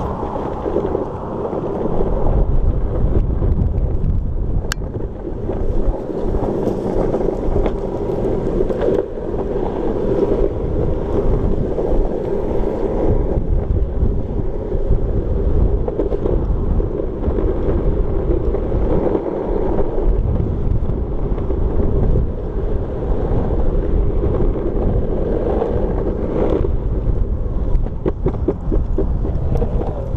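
Wind buffeting the microphone of a shoulder-mounted action camera while riding through the streets: a loud, continuous rumble with a steady hum underneath that drops away near the end.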